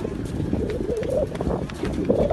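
A crowd of people talking and calling out at once, a dense jumble of voices with no single speaker standing out.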